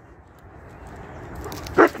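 A Weimaraner and a German Shepherd tussling on their leads: a low, scuffling noise that slowly grows louder, then one short, loud dog bark near the end.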